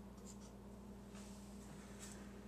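Sharpie felt-tip marker writing on paper, a faint scratching.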